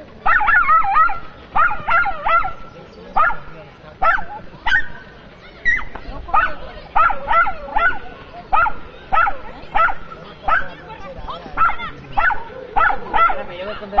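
A small dog barking in repeated high, sharp yaps, about two a second, the excited barking typical of a dog during an agility run.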